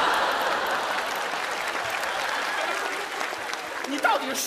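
A studio audience applauding, loudest at the start and slowly dying down.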